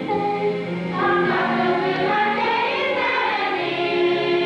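A choir singing, several voices holding notes together.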